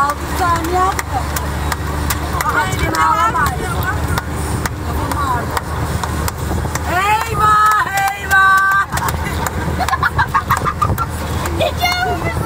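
Voices talking over the steady low rumble of a moving car, with a car horn honking twice about seven and a half to nine seconds in.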